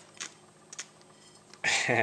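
A few faint clicks, then a man's short laugh near the end.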